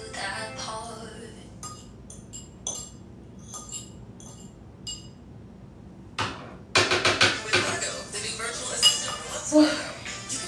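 Light clinking of dishes and cutlery, several separate ringing clinks, then a louder continuous rush of sound over the last few seconds.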